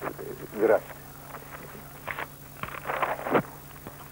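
An elderly man speaking Russian in a few short, halting phrases with pauses between them, over a steady low hum.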